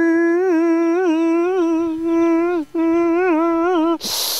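A man singing or humming one long held note with small wavering turns, breaking off briefly a little past halfway and taking the same note up again.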